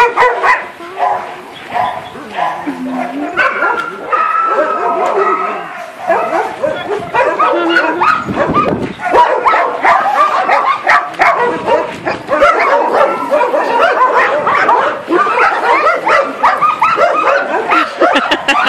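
Several dogs playing together and vocalizing almost continuously, with barks and whining and high-pitched cries that overlap one another.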